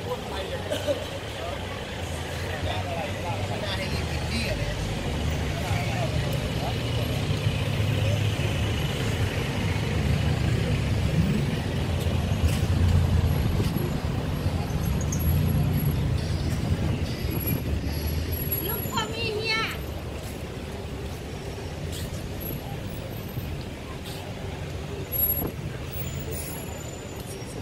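Busy roadside street ambience: traffic running along the road, with a heavy vehicle's engine rumble building up and passing through the middle, and people talking in the background. A brief high chirping sound comes about three quarters of the way through.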